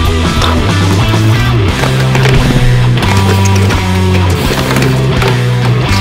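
Background rock music with distorted electric guitar and a steady beat.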